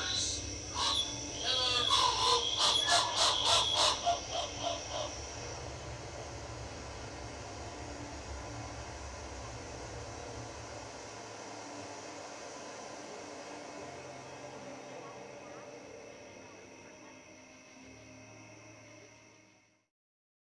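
Excited voices and calls from onlookers during the first few seconds, over a steady electronic drone of sustained tones. The drone carries on alone and fades out near the end.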